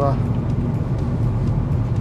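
Car cabin noise while driving: a steady low drone of engine and tyres on the road, heard from inside the car.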